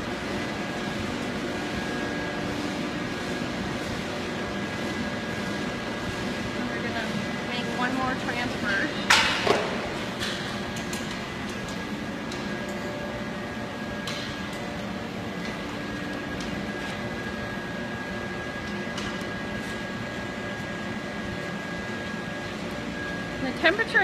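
Steady drone of running foundry machinery, with several held tones over a constant noisy hum. There is a single sharp knock about nine seconds in.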